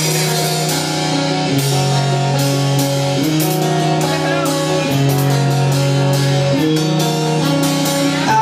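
Live rock band playing an instrumental passage on electric bass, electric guitar and drum kit: long held chords that change about every one and a half seconds, with cymbal crashes over them.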